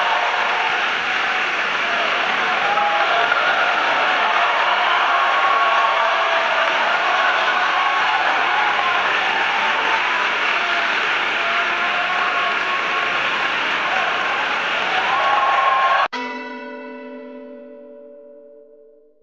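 A large audience applauding steadily for about sixteen seconds, with some voices in the crowd. The applause cuts off suddenly and a bell-like chime rings out and fades away.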